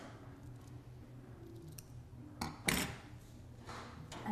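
Scissors cutting through the excess satin-like ribbon, heard as two short snips a little over two seconds in, the second louder.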